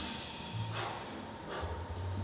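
Short, forceful exhaled breaths from people straining through floor ab exercises, two of them about 0.8 s apart.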